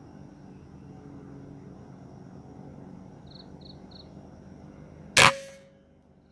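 A single shot from a PCP air rifle about five seconds in: one sharp crack that dies away quickly with a brief ringing tone.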